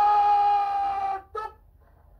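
A drill command shouted on one long, drawn-out held note that ends about a second in, followed by a short clipped syllable.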